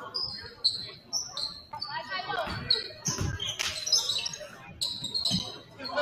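Basketball game on a hardwood gym floor: sneakers squeak repeatedly on the court, and the ball bounces a couple of times in the middle and once near the end.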